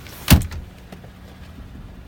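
A single heavy thump about a third of a second in, the door of a 2014 GMC Sierra crew cab's rear cab being shut, followed by low handling rumble.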